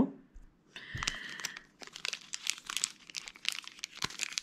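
Foil wrapper of a Magic: The Gathering booster pack being torn open by hand: a short rip about a second in, then a run of quick, sharp crinkles of the foil.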